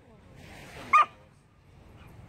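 A dog gives one short, sharp, high yip about a second in, during rough-and-tumble play between two dogs.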